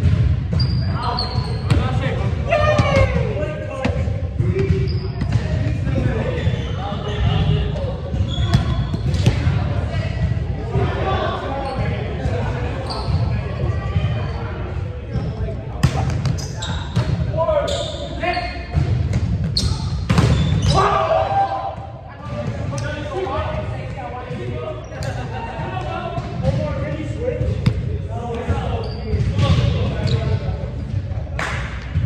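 Volleyballs being hit and bouncing on a hardwood gym floor, with sharp hits scattered throughout and echoing in a large hall, over players' voices calling out.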